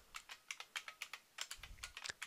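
Typing on a computer keyboard: a faint, steady run of keystrokes, several a second.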